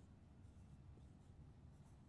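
Near silence: faint strokes of a marker on a whiteboard over a low room hum.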